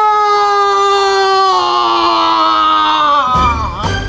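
A young man's long, drawn-out scream of pain on one held note that slowly falls in pitch, cut off abruptly about three seconds in.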